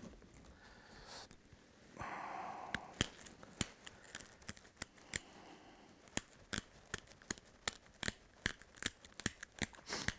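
Unifacial pressure flaking on white chert: a long run of small, sharp clicks and snaps as short flakes are pressed off the edge one after another, a stage in shaping a straight, sturdy scraper edge. A brief scraping rustle comes about two seconds in.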